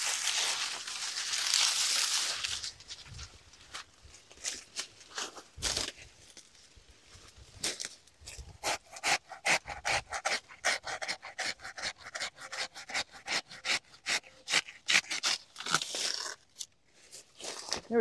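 Banana leaves and stalks rustling and tearing as a fallen banana plant is pulled apart and cut back. A loud rustle comes first, then from about eight seconds in a long run of quick, rapid strokes.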